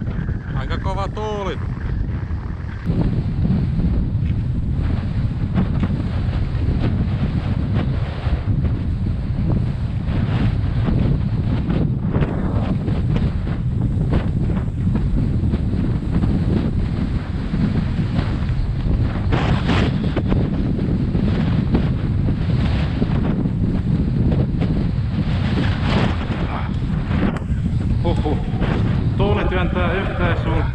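Wind buffeting the microphone: a steady low rumble that gets louder about three seconds in and stays strong.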